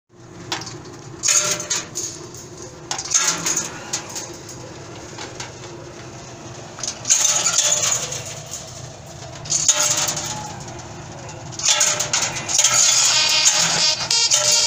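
Candlenut-cracking machine running with a steady hum, with bursts of hard rattling and cracking each time a handful of candlenuts goes in and the shells are split; about five such bursts, the last one longest.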